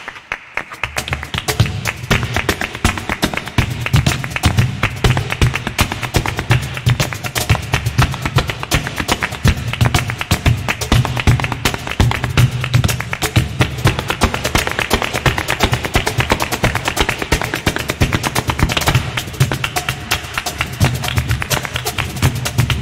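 Flamenco zapateado footwork: rapid, continuous heel and toe strikes of a dancer's shoes on the stage floor, over a cajón beat. After a brief lull at the very start, the strikes run on dense and fast.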